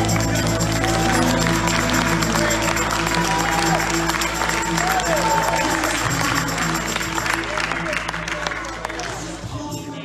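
A church worship band holds a sustained closing chord while people clap and voices call out over it. The low notes cut off and the sound fades just before the end.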